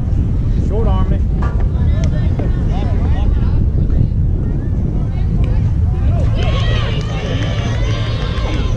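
Wind buffeting the microphone with a steady low rumble, under scattered distant voices of players and spectators calling out. Near the end several higher-pitched voices call out together.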